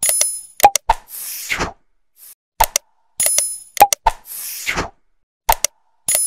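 Sound effects for a like-and-subscribe animation: a pair of sharp clicks, a short bright ding, two more clicks and a whoosh, the set repeating about every three seconds.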